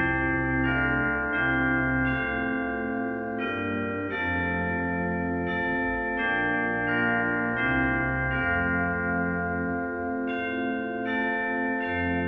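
Church chimes sounding a slow tune, a new note about every second, each note ringing on under the next.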